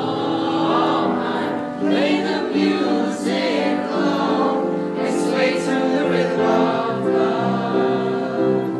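Several voices singing together over sustained instrumental accompaniment in a live stage musical number.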